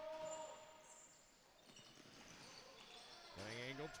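Quiet arena ambience during play, with only faint, scattered knocks from the floor. Play-by-play commentary resumes near the end.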